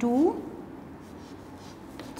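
Chalk writing on a blackboard, a few faint short strokes.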